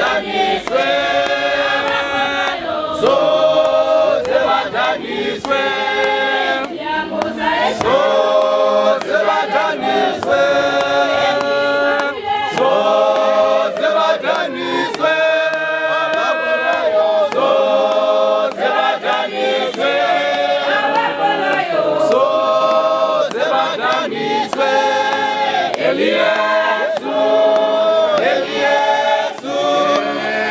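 Church congregation singing a hymn together in harmony, with long held chords and sharp beats running through the singing.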